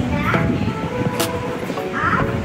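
Children's voices: a girl speaking over the chatter of a group of small children.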